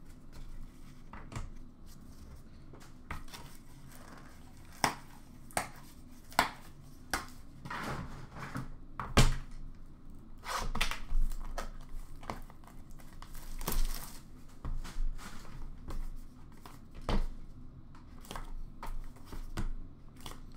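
Cardboard trading-card boxes and cards handled by hand: scattered taps and knocks with short rustles and scrapes of cardboard, as a box's lid is worked off near the end.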